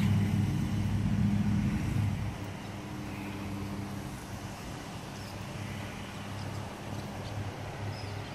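Lawn mower engine running at a steady speed, louder for the first two seconds and then dropping to a lower, even hum.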